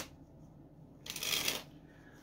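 A standard deck of playing cards shuffled by hand: one brief rush of card noise about a second in, lasting about half a second.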